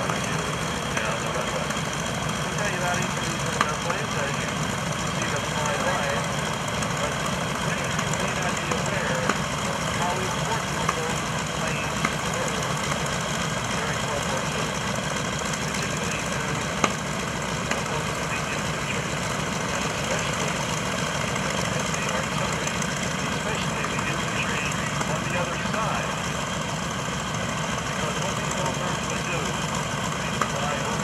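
Steady engine drone under indistinct background voices, with a few short sharp ticks.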